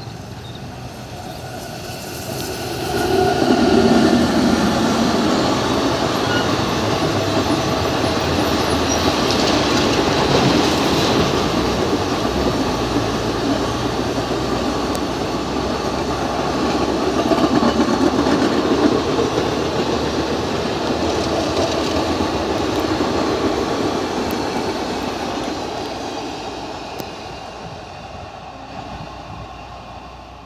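Indian Railways WAG-9 electric locomotive and its rake of passenger coaches passing close at speed, wheels running on the track. The sound swells about three seconds in, stays loud while the coaches go by, and fades away over the last few seconds.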